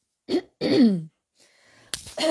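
A woman clears her throat, one short sound then a longer one, with her hand at her mouth. A sharp click comes near the end.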